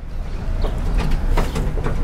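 Classic Volkswagen Beetle's air-cooled flat-four engine starting and running rough, a choppy low rumble with a few sharp clicks and rattles, like a loose toolbox.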